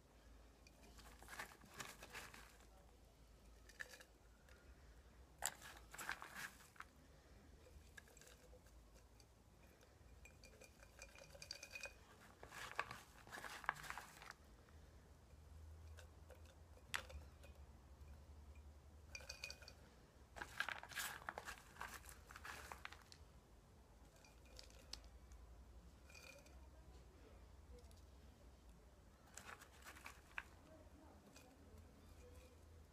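Damp orchid bark mix being dropped by hand into a glass jar and settled in the bottom: faint, intermittent rustling and crunching with light clinks against the glass, in several short bouts.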